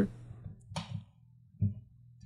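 Faint handling noises as a pair of headphones is swapped: a short soft rustle about a third of the way in, then a brief low thump a little past the middle.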